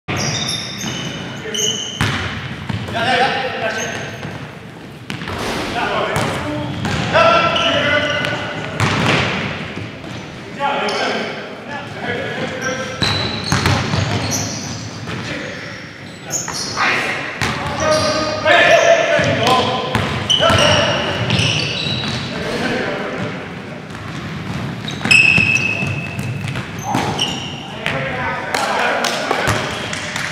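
Basketball game in a gymnasium: a basketball bouncing on the hardwood floor among many sharp knocks, with players' voices calling out indistinctly, echoing in the large hall.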